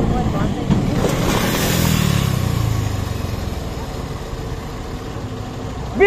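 Vehicle engines running at low speed, a motorcycle's engine and a large truck's diesel close by. The low rumble drops a little in pitch and level over the first few seconds as things slow and settle to idle.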